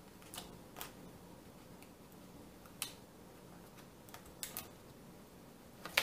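Faint ticks and light rustles of kraft cardstock being handled and pressed down on a tabletop, about half a dozen scattered clicks in all, with a low steady room hum beneath.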